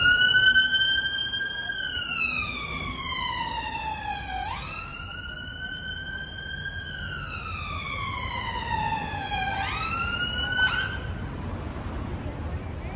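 Ambulance siren sounding a slow wail: each cycle jumps up quickly, holds briefly, then slides down over about three seconds. Three cycles sound, and the siren stops about a second before the end.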